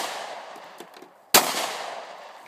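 Semi-automatic pistol fired twice in quick succession: the first shot's report is still dying away at the start, and the second shot cracks about a second and a half later, its echo fading.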